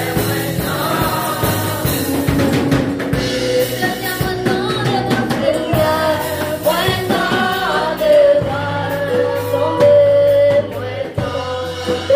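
Live gospel worship song: a girl's voice leading the singing with other voices joining, over a drum kit.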